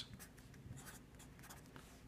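Marker pen writing on paper: a run of faint, short pen strokes.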